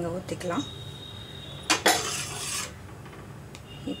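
A metal ladle knocks once against the side of a steel cooking pot about two seconds in, followed by a short scrape as it is stirred through thick tomato sauce.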